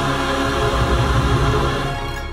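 Music with a choir singing over instruments, a big sustained chord with moving bass notes near the close of a song.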